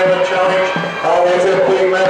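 Several spectators shouting long, drawn-out calls, cheering on the dragon boat crews as they race toward the finish.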